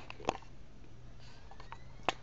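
Faint sound of an iMac G5's slot-loading DVD drive starting to read a just-inserted Snow Leopard install disc: a sharp click about a third of a second in, then a few light ticks and a faint rising whine as the disc spins up, over a low steady hum.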